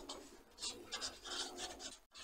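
Felt-tip marker rubbing and scratching across paper in a run of short, quick strokes as letters and a fraction bar are written.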